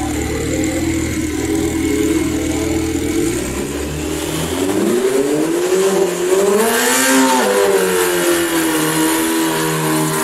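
Turbocharged 4G63 four-cylinder drag-racing engine in a Foxbody Mustang, running steady in the water box and then revving up for a burnout. The revs climb from about four seconds in, rise and fall around seven seconds, and hold high near the end as the rear tyres spin into smoke.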